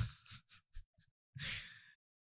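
A man sighs into a close microphone about one and a half seconds in, after a few faint mouth clicks; the sound then cuts off to silence.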